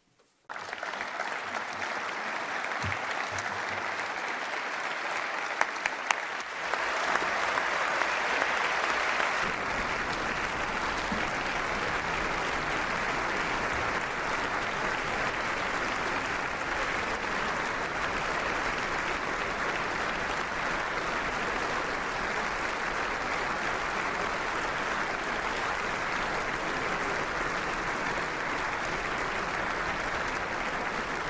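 Applause from a large audience in a standing ovation. It starts just after the speech ends, grows louder about six seconds in, and then holds steady.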